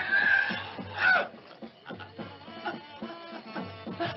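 Film soundtrack: a woman's short strained cries in the first second or so, then quieter sustained music with held, steady tones.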